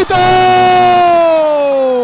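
A man's long drawn-out excited shout, one held vowel that starts loud and slowly falls in pitch as it fades: a futsal commentator crying out a player's name as he breaks through on goal.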